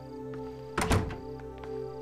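Two quick knocks on a wooden door, about a second in, over soft background music with long held tones.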